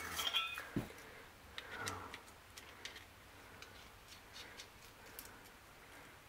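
Faint, scattered metal clicks and taps from a small camp stove, canister adapter and propane bottle being handled.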